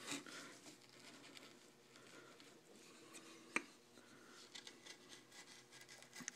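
Faint cutting of a No. 11 U-shaped carving gouge paring an outline into wood, with one sharp click about three and a half seconds in.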